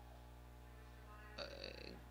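Near silence with a steady low electrical hum on the line. Near the end comes one brief throaty vocal sound, a hesitation noise from the interpreter just before speaking.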